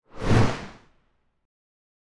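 A single whoosh sound effect for an animated logo: it swells quickly and dies away within about a second.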